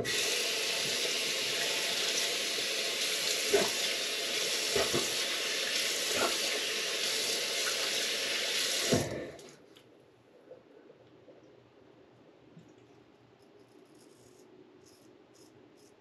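Bathroom sink tap running for about nine seconds, with a few brief splashes or knocks, then shut off suddenly. Faint ticks follow near the end.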